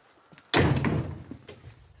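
A heavy wooden front door being pushed shut, closing with one loud thud about half a second in, followed by a few small knocks.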